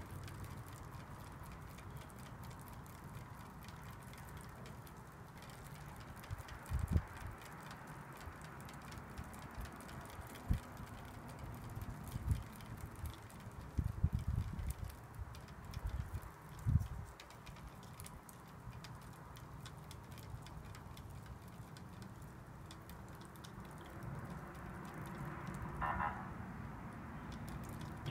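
A thin wooden stick stirring pH buffer powder into water in a small plastic cup, with a few dull low knocks now and then over a steady faint hiss.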